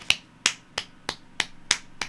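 A quick, even run of sharp finger snaps, about three a second, seven in all.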